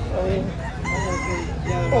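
A single drawn-out animal call lasting under a second near the middle, over people talking.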